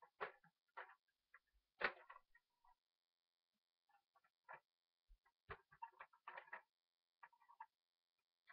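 Faint, scattered taps and knocks of hands handling a small black-framed board as it is turned over to show its cardboard back. There is one louder knock about two seconds in and a quick cluster of clicks past the middle.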